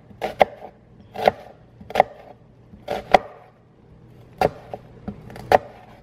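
Santoku knife slicing down through a half onion and knocking on a wooden cutting board: about ten sharp, short knife strikes at uneven intervals, some in quick pairs.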